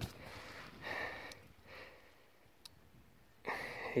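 A person breathing hard close to the microphone, out of breath after exertion: a few soft breaths in the first half, then near quiet with a single small click.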